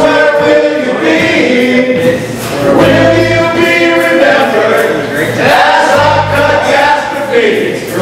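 A group of men singing a song together, live, with acoustic guitar accompaniment.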